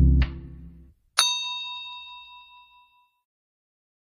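The end of a song, its bass and beat cutting off within the first second, then a single bright bell-like ding that rings and fades away over about two seconds.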